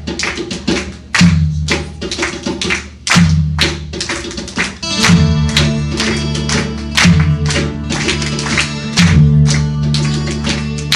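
A live band playing a worship song: rhythmic strummed guitar and percussion over heavy bass notes that land about every two seconds. The music fills out and becomes more sustained about halfway through.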